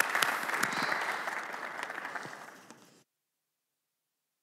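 Audience applauding in a hall. The clapping fades over the second half and cuts off abruptly about three seconds in.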